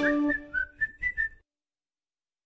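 Background music ends and a short whistled phrase of about five quick notes follows, stopping about a second and a half in.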